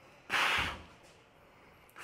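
A man's single short, sharp exhale, lasting about half a second, as he holds a bicep flex.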